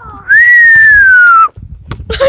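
A person whistling one loud note of about a second: a quick rise, then a slow downward slide.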